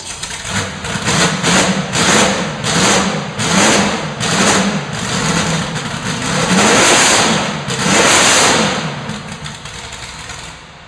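Ford GT40 Mark IV's 427 cubic-inch V8 racing engine, loud and just started, revved in a quick string of short blips. It gives two longer, higher revs near the end, then drops back towards idle.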